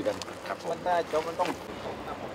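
A person speaking Thai for about the first second and a half, over steady background noise.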